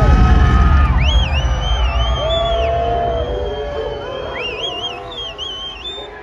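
Heavy bass from a concert PA hits at the start and slowly fades. Over it a crowd cheers, and someone whistles loudly twice: about a second in, and again near the end.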